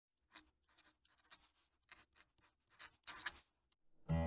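Fountain pen nib scratching across paper as a word is written in cursive: a series of short, faint strokes, the loudest ones near the end.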